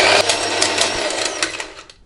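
Electric mixer grinder running at full speed, blending soaked dates, nuts and figs into a thick paste; the motor dies away and stops near the end.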